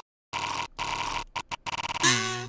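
A harsh, hissy noise with a faint steady high tone, starting after a brief dead silence and chopped off abruptly several times near the end, like a choppy edited sound effect.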